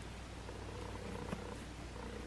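Quiet room tone with a steady low hum, and one faint click about a second and a half in.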